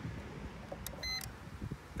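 3M Dynatel 7550 cable-locator transmitter giving one short electronic beep about a second in as its frequency button is pressed, just after a faint click.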